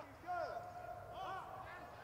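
Faint voices of footballers shouting on the pitch in an almost empty stadium: a couple of short calls over a steady low background noise.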